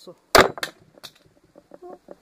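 Hammer blows on a steel tube drift, knocking the old inner drum bearing out of a washing machine's plastic tub housing. A loud metallic strike comes about a third of a second in, a second follows just after, and a weaker knock comes about a second in.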